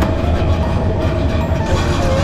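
Steady low hum and hiss of supermarket ambience beside open refrigerated meat display cases, with a faint steady tone running through it.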